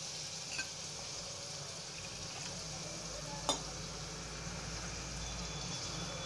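Ground masala paste sizzling in oil in a steel kadhai, a steady frying hiss. A single sharp tap of metal is heard about halfway through.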